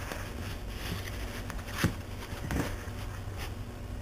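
Soft scuffling and a few brief knocks as a Chinese Crested dog tugs at a toy held in a hand, over a steady low hum.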